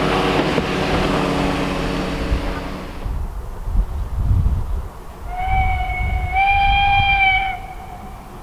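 A steam train runs along the line for the first three seconds. After a low rumbling, a steam locomotive whistle sounds for about two seconds from a little past the halfway point, stepping up slightly in pitch midway.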